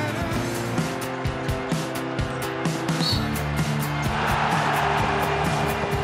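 Programme bumper music with a steady beat and held notes, with a short rush of noise about four seconds in.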